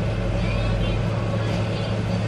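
A steady low hum, with faint, indistinct voices over it.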